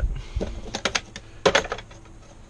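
Small tools clicking and clattering as they are handled and lifted out of a plastic under-seat storage drawer: a quick run of light clicks a little after half a second in, then a louder cluster about one and a half seconds in.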